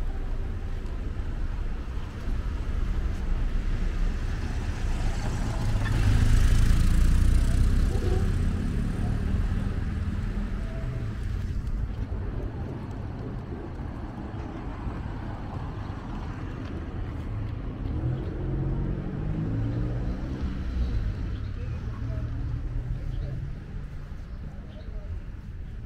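Town-street traffic: a car drives past close by, loudest about six to eight seconds in, over a steady low hum of the street, with people's voices here and there.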